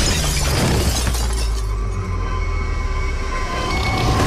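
A large plate-glass shopfront shattering as bodies crash through it, the breaking glass going on for a second or so, over a loud, sustained low rumble and dramatic trailer music.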